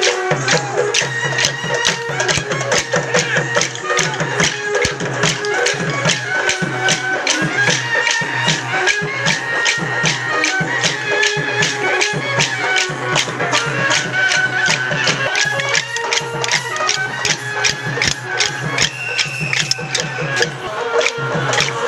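Folk music for a kolatam stick dance: a steady drum beat and a held melody line, with quick, evenly spaced sharp clicks of dancers' sticks striking together in time.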